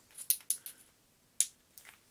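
Metal XLR connectors on the fan-out tails of a multicore stage snake clinking against each other as they are handled: a few light clicks in the first second and a sharper one about one and a half seconds in.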